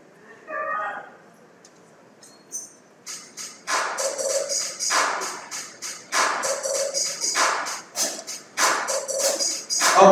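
A single voice calls out about half a second in. From about three seconds, rhythmic hand clapping and a tambourine begin keeping time, roughly two to three beats a second, as a congregational song starts up.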